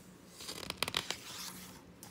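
A picture-book page being turned: a faint, brief paper rustle with a few quick crackles about half a second to a second in.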